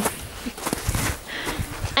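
Footsteps crunching on packed snow, with a few irregular steps and wind rumbling on the microphone.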